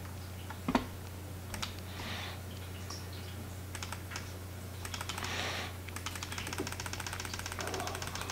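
Computer keyboard and mouse clicks at a desk: a couple of single clicks early, then a fast, even run of ticks near the end, over a steady low electrical hum, with a few soft breaths.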